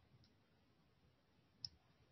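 Near silence: faint room tone, with one brief sharp click about one and a half seconds in.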